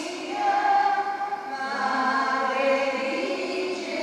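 Church choir singing a hymn, the voices holding long notes.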